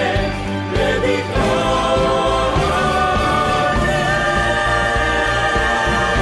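Choral music: a choir singing long held chords.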